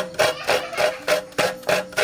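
Half coconut scraped by hand against the serrated blade of a coconut scraper, making rasping strokes about three a second as the flesh is grated out of the shell.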